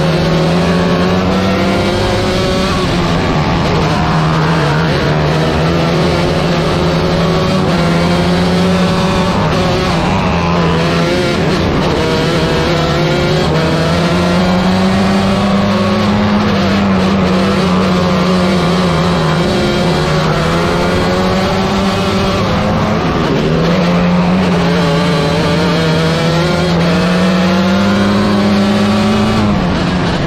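A 125cc micro sprint car engine running hard at high revs under racing load. Its pitch dips and climbs back several times over the stretch as the car goes through the turns.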